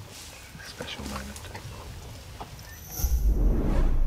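Soft outdoor rustling and scattered clicks. About three seconds in, a much louder logo sting begins: a deep, low sound with a bright shimmer on top.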